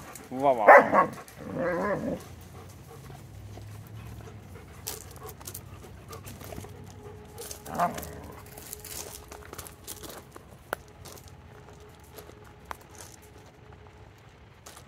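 Dogs barking in loud calls of wavering pitch during the first two seconds, then a quieter stretch with one more short bark near the middle.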